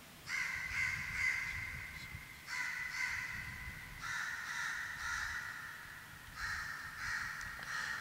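Bird calls in four runs of about a second and a half each, with short gaps between them.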